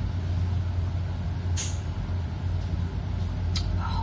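Steady low hum with a noisy rush, like a kitchen range-hood exhaust fan running, with a short sharp sound about one and a half seconds in.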